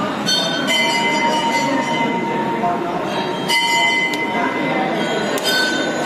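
Hanging temple bells struck several times. Each strike rings on with clear, steady high tones that overlap the next, over the murmur of a crowd.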